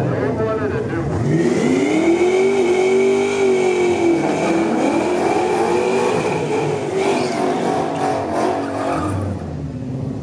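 A Ford Mustang GT's 5.0 V8 revving in two long swells while the rear tyres spin in a burnout, with a steady high tyre squeal over it. Near the end the revs drop away to a lower running sound.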